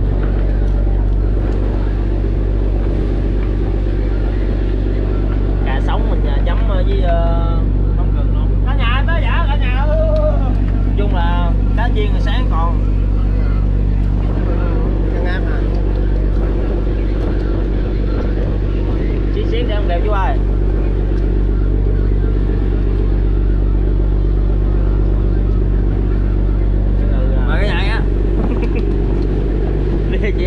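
Fishing trawler's inboard engine running steadily, a loud low drone that does not change, with voices talking briefly over it now and then.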